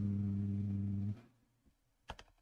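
A man's drawn-out, hesitating "ummm", held on one low steady pitch and stopping about a second in.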